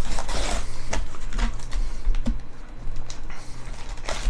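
Foil-wrapped trading-card packs crinkling and rustling as a stack of them is pulled out of a cardboard hobby box, with a steady low hum underneath.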